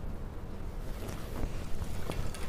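Cotton fabric rustling as a suit is unfolded and lifted, over a low rumble of handling noise.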